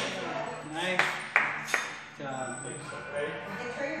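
Two sharp metallic clinks about a third of a second apart, a shoulder press machine's weight stack plates knocking together during the reps, with voices under them.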